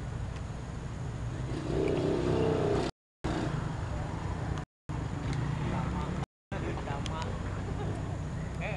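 Indistinct low voices over a steady low rumble. The sound cuts out completely three times, for a fraction of a second each.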